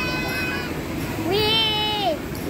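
High-pitched, drawn-out vocal cries from riders on a spinning amusement ride: one held through the first half second or so, another rising and then held from about halfway in, falling away at the end.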